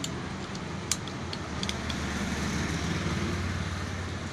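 A steady low mechanical hum in the background, a little louder in the second half, with a few light metal clicks of a spanner working on the end cover of a desert-cooler motor, the sharpest about a second in.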